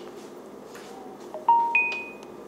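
Smartphone chime from an LG Phoenix 5: a short run of three bell-like tones rising in pitch about one and a half seconds in, the last and highest ringing on briefly.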